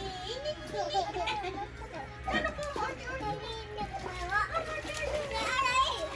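Toddlers babbling and calling out as they play, their high voices rising and falling throughout.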